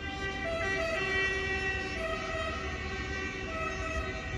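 SNCF TGV high-speed train rolling slowly into the station, with a steady whine of several high tones over a low rumble.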